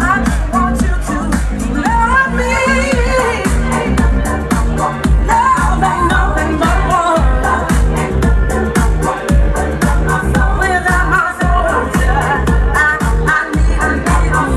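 Live dance music played loud over a PA system: a steady beat with heavy bass and a sung vocal melody over it.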